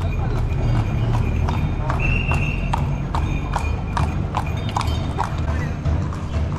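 Horses' hooves clip-clopping on a paved road at a walk, about two to three steps a second, with voices in the background.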